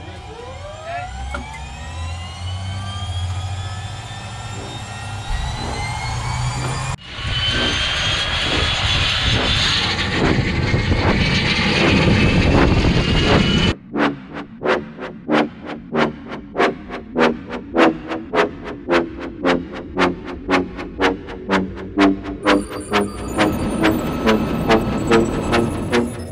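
Bell 412 helicopter turbine engines starting up: a whine rising in pitch, broken by a cut about seven seconds in to a second rising whine. About fourteen seconds in it gives way abruptly to music with a steady beat of about two pulses a second.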